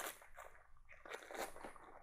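Faint crinkling and small clicks of plastic medical packaging and a syringe being handled, in a few short scattered bursts.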